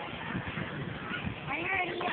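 Low outdoor background noise with faint indistinct voices; a person's voice starts up near the end.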